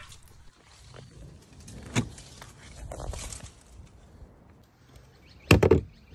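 Vehicle-to-load adapter plug being unlatched and pulled from an MG4's charging port, and the port closed: a light click about two seconds in, some handling noise, then a loud quick burst of plastic knocks near the end.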